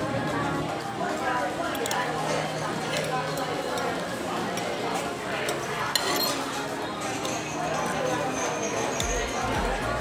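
Stainless steel fork and knife clinking and scraping against a ceramic plate while cutting and gathering noodles, with a sharp clink about six seconds in. Steady background chatter of a busy restaurant dining room runs underneath.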